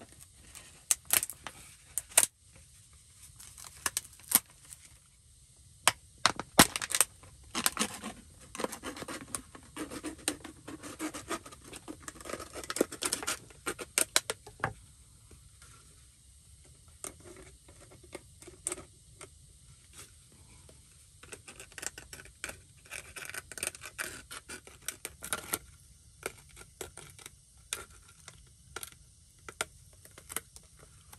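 Knife cutting through a thin plastic water bottle: irregular crackles, scratches and crinkles of the plastic. The cutting is busiest in the first half, goes quieter in the middle, then picks up again as the cut plastic is handled.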